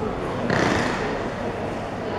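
Railway station concourse ambience: a steady background hubbub, with a sudden louder rush of noise about half a second in that fades away over about a second.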